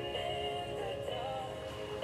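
A pop song with a singing voice, playing from a radio.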